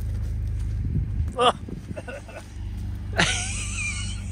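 An engine runs steadily while a car burns oil and throws thick smoke. Its low drone dips for about a second midway and then picks back up. A man exclaims "oh", and near the end there is a loud, wavering cry.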